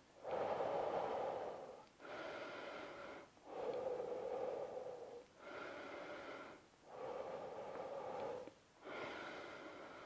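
A man taking slow, deep breaths in and out to recover after a set of push-ups: about three full breaths, each in-breath and out-breath lasting one to two seconds with a short pause between.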